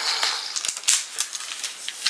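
Gift wrapping and ribbon rustling and crinkling in the hands as the ribbon is worked loose, with a few light clicks.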